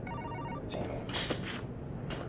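A telephone ringing: one short burst of rapid electronic beeping tones at the start.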